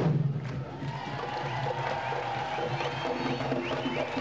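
Candombe drum line playing tambores, sticks and hands striking barrel drums with sharp wooden clicks of the stick. The strokes thin out after about half a second, leaving a steadier held sound with faint crowd noise underneath.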